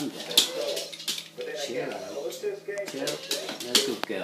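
Broadcast talk in the background: a voice talking continuously, from a programme about football transfers.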